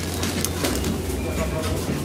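Paper shawarma wrapper rustling and crinkling as it is handled, over a steady low rumble.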